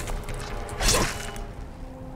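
Film soundtrack: a music drone with two heavy whoosh-and-impact hits, one at the start and another about a second in.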